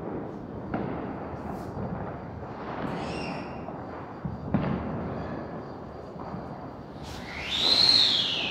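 Diwali firecrackers going off around the building: a steady crackle with a few sharper bangs, one about a second in and a louder one about four and a half seconds in. Near the end a whistling firework lets out a loud, shrill whistle that rises and then falls in pitch.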